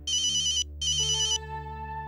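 Mobile phone ringing with a fast-warbling electronic ringtone: two bursts of about half a second each, a short gap between them, over a low steady drone.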